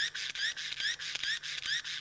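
YoGen hand-cranked charger's pull-cord generator worked in quick short pulls, generating power: a repeated short rising whir, about three a second, with light clicks from the mechanism.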